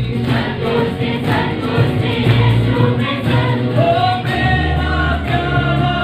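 Live Christian worship music: several voices singing together over acoustic guitars and a bass guitar. A long sung note is held about four seconds in.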